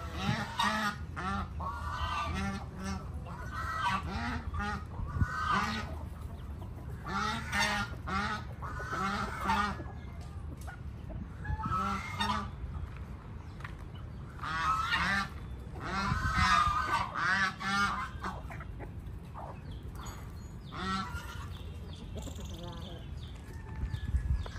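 Domestic goose honking in repeated bouts of several calls each, with short pauses between the bouts.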